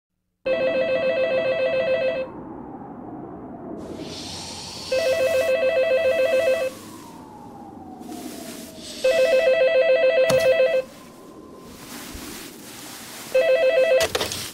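Corded landline telephone bell ringing four times, each ring a rapid metallic trill lasting a little under two seconds, the fourth cut short near the end.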